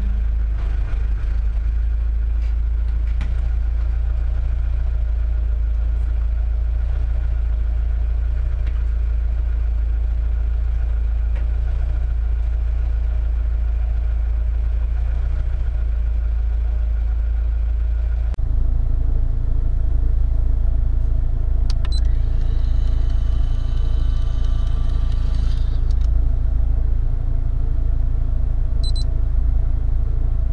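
Car engine idling steadily with a deep rumble. About 18 seconds in it gets slightly louder and a hum is added, with a couple of short clicks later on.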